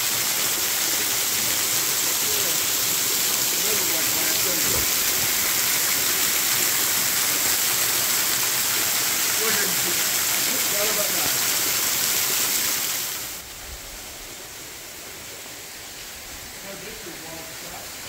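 Waterfall: thin streams of water falling from a sandstone overhang and splashing onto rocks, a loud steady hiss close by. About two-thirds of the way in it drops suddenly to a softer, more distant rush.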